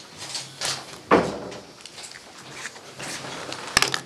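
Papers being handled and shuffled on a table, with one solid thump about a second in and a quick cluster of sharp clicks near the end.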